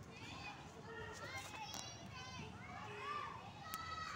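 Children's voices at a distance, calling and shouting as they play, with no clear words.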